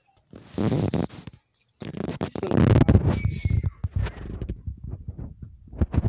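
Handling noise as a camera is lowered and moved about against a knit sweater: muffled rubbing, rustling and bumps on the microphone, with a short laugh about a second in.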